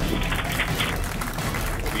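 A room full of people applauding and cheering at the news that the spacecraft's parachute has deployed, over a low steady music bed.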